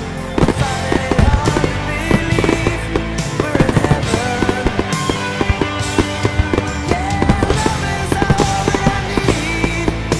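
Aerial firework shells bursting, with many quick bangs and crackles, over loud music.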